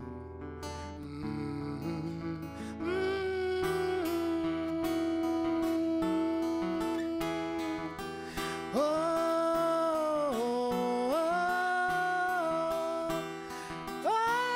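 A male voice singing slow held notes over a plucked acoustic guitar. The guitar plays alone at first; about three seconds in the voice enters with one long held note, followed by two shorter sung phrases.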